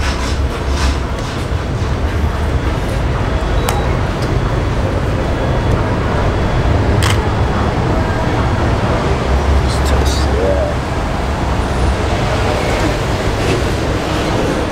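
City street traffic noise: a steady low rumble of passing vehicles, with a few short sharp clicks.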